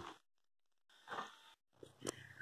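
Near silence, with one brief faint noise about a second in.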